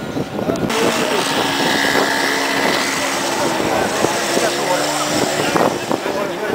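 A large crowd of men talking and shouting over one another, many voices at once, getting louder about a second in.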